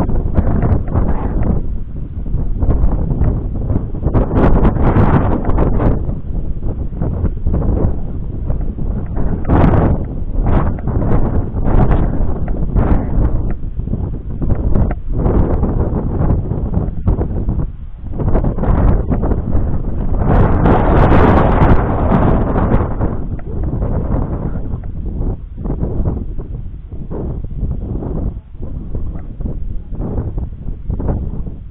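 Wind buffeting the microphone in uneven gusts, with a stronger, fuller gust about twenty seconds in.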